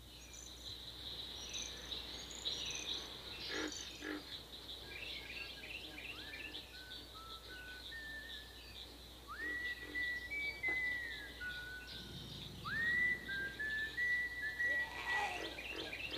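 Forest ambience of bird chirps and calls over a steady high insect-like drone. From about six seconds in come several held whistle-like notes that swoop up and then step between pitches.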